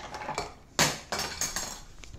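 Plastic pieces of a Japanese candy kit rattling and knocking against a wooden tabletop as they are handled, with one louder knock a little under a second in and a few lighter clicks after it.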